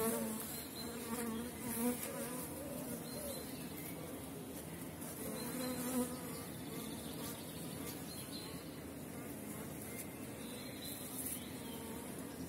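Steady buzzing of a honeybee colony in an opened hive, its frames densely covered with bees.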